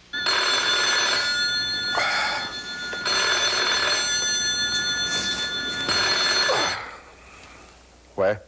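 Telephone ringing in long repeated rings that stop about seven seconds in, when the call is answered.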